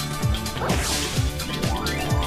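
Upbeat TV theme music with a steady beat about twice a second and rising sweeps, with a swoosh sound effect about a second in.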